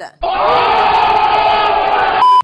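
A loud sound effect of a crowd shouting, cut in suddenly just after the start and held for about two seconds.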